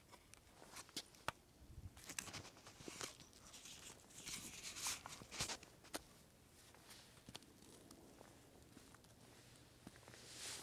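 Faint footsteps scuffing and crunching on gritty rock, with scattered small clicks, busiest in the first six seconds and near quiet after.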